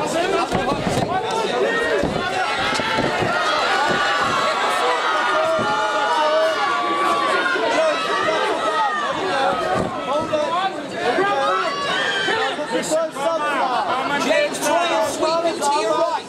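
A crowd of spectators shouting and calling out, many voices overlapping, at a steady, fairly loud level.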